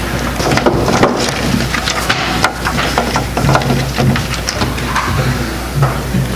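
Handling noise from a wooden pulpit picked up close by a headset microphone: irregular knocks, clicks and rustles, over a steady low electrical hum.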